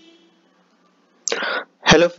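Near silence for about a second, then a short, sharp breath noise from a man close to the microphone, lasting about a third of a second, just before he begins to speak at the very end.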